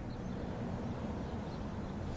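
Steady, low outdoor street background noise through the reporter's microphone: a faint, even rumble of city traffic.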